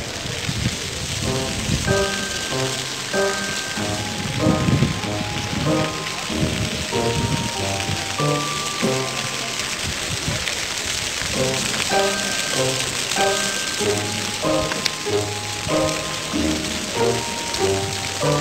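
Ground-level plaza fountain jets splashing onto paving, a steady hiss of spray, with a simple melodic music track playing over it.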